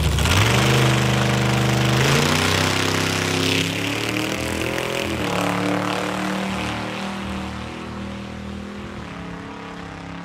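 A small homemade dragster's engine launching hard from the start line, its pitch climbing and dropping back about two and five seconds in as it shifts up. The sound fades as the car runs away down the track.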